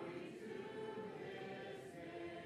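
Quiet intro music: a choir singing slow, sustained chords that change about once a second.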